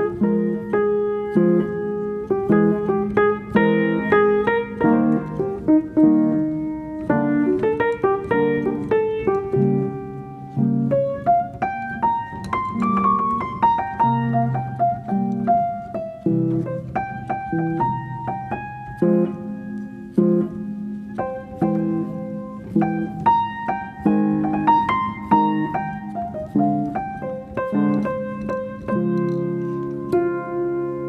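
Background piano music, a continuous flow of notes in a gentle melody.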